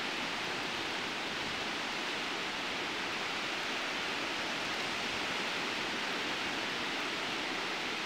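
Steady, even hiss of ocean surf, with no single wave crash standing out.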